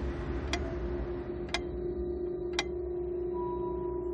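Clock ticking about once a second over a sustained low drone of soundtrack music. The ticks stop about two-thirds of the way through, and a higher held tone enters near the end.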